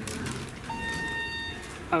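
Elevator hall lantern chime: a single electronic tone held for just under a second, starting a little over half a second in. It signals that the car at this landing is answering the up call.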